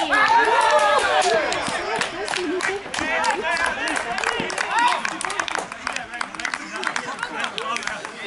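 Men shouting and cheering as a goal goes in, loudest in the first two seconds, followed by scattered hand clapping and further calls.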